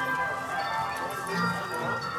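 Holiday-season background music playing from the park's loudspeakers.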